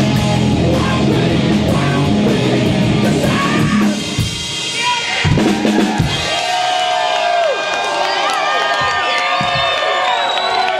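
Loud live rock band with drum kit and electric guitars, the song ending about four seconds in with a few final drum hits, then the crowd cheering and yelling.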